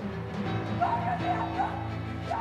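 Background music with steady low sustained tones, joined about a second in by a dog barking and yipping in short repeated calls.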